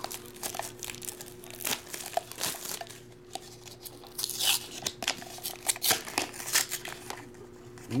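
Clear plastic shrink-wrap being torn and crinkled off a small cardboard trading-card box, then the box being slid open and its cardboard insert pulled out: irregular crackles and brief tearing rustles. A faint steady hum runs underneath.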